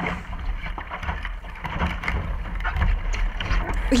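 Wind buffeting a boat-mounted action camera, with water rushing along the hull of a small sailing skiff under way. It grows louder near the end as the boat heels over.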